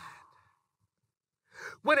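A man's voice trails off and there is a pause, then a quick audible breath in, just before he starts speaking again near the end.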